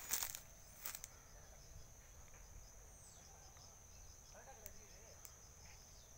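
Faint, steady high-pitched drone of insects, with a couple of crackling footsteps on dry leaf litter at the start and again about a second in.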